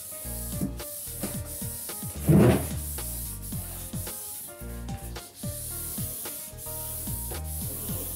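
A paper towel on a Quickle Mini Wiper rubbing along a wall and baseboard, over background music, with one brief louder swipe about two and a half seconds in.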